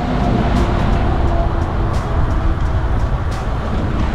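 Wind rushing and buffeting over an action camera's microphone on a fast-moving road bike, a dense low rumble, with faint road and traffic noise underneath.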